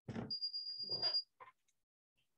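Marker writing on a glass lightboard: a second or so of rubbing strokes with a steady high squeak through most of it, then one short stroke just after.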